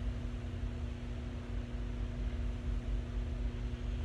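Steady room noise in a pause between words: a low, even rumble with a constant electrical-sounding hum over it, unchanging throughout.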